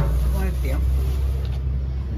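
Low, steady engine rumble of a road vehicle on the street.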